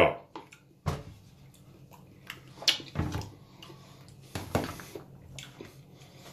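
A few light clicks and knocks, with a short scrape about two thirds of the way through, from a metal spoon and a plastic food container being handled on a wooden cutting board.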